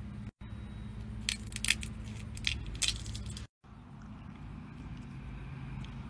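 An in-shell peanut being cracked open by hand: a handful of short, dry cracks and crackles between about one and three seconds in, over a steady low hum.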